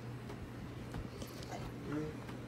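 American pit bull yawning, with a soft whimper near the end, over a steady low hum.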